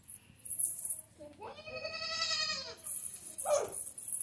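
A baby goat bleating once, a single drawn-out call of about a second and a half, followed near the end by a shorter, harsher sound.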